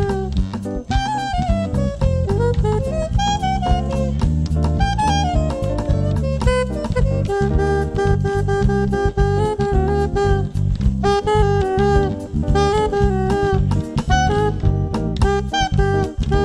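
Live jazz quartet playing a jazz standard: a soprano saxophone lead over guitar, electric bass and a drum kit. The saxophone line moves in quick runs through the first half, then settles into longer held notes.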